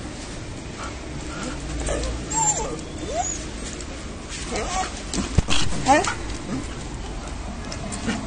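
Small black stray dog whining and whimpering in short high-pitched cries that slide up and down, the excited whining of a dog greeting a person it knows. A sharp knock comes about five seconds in.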